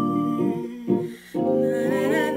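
Gospel song sung in held notes, breaking off for a moment about a second in before a new phrase begins.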